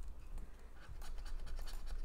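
A coin scraping the coating off a paper scratch-off lottery ticket in quick, short strokes, which grow busier from about halfway through.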